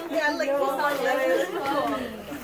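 Women's voices talking and chattering, overlapping.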